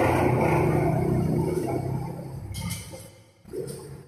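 The final sound of a karaoke backing track dies away: a full, sustained ending that fades out over about three seconds. Two short scuffing noises follow near the end.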